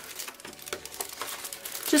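Clear plastic gift bag and cardstock rustling and crinkling faintly as they are handled, with a few light clicks.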